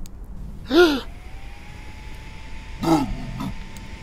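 Two short pitched vocal cries about two seconds apart, each rising and then falling in pitch, over a low steady background hum with a faint thin tone that comes in after the first cry.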